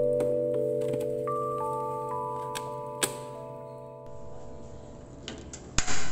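Background music of held mallet-keyboard notes, slowly fading. Near the end come a few sharp clicks and a loud snap from the ignition knob of a Rinnai gas stove being turned to light the burner.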